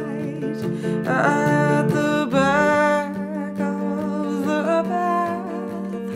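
Fender electric guitar chords ringing under a woman's voice singing long, held notes without clear words.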